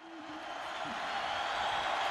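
Football stadium crowd noise, a steady murmur of a large crowd, fading in over the first second or so and then holding steady.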